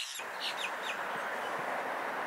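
A few short, high bird chirps in the first second, over a steady outdoor hiss that carries on alone after them.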